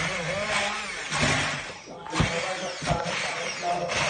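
Hand-held stick blender running in a pan of tomato pasta sauce, pureeing it, in several bursts with short breaks between them.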